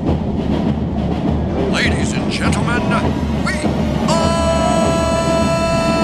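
Football players shouting and yelling over a loud, dense rumble of noise, with several short shouts about two to three and a half seconds in. About four seconds in a long, steady horn-like tone starts and holds.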